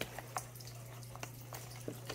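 A few faint clicks and light handling noises from a cardboard box being opened by hand, over a low steady hum.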